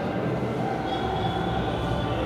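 Steady, even background rumble, with a faint thin high tone coming in about a second in.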